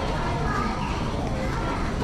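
Chatter of passers-by talking as they walk along a busy passageway, with children's voices among it.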